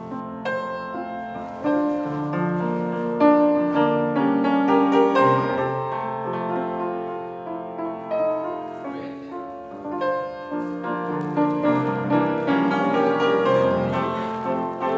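Grand piano playing classical-style ballet class accompaniment, a melody over low chords.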